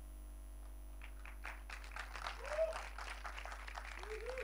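Faint, scattered audience applause beginning about a second in, with two short catcalls from the crowd, one midway and one near the end.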